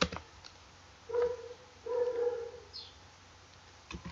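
A dog whimpering twice, two short high whines, the second one longer, with a single keyboard click at the start.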